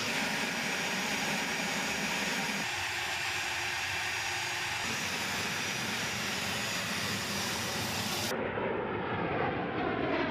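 A-10 Thunderbolt II's twin TF34 turbofan engines running with a steady whine. Near the end the sound changes to an A-10 passing in flight, its pitch falling.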